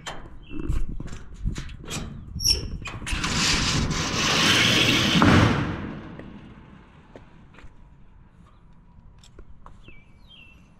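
A loud rush of noise swells about three seconds in, holds for a couple of seconds and then fades away, after a run of light clicks and knocks; short bird chirps are heard faintly.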